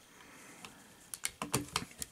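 Light clicks of a screwdriver tip and the plastic and diecast parts of a transforming robot figure's knee as they are handled, a quick run of small clicks in the second half after a faint first second.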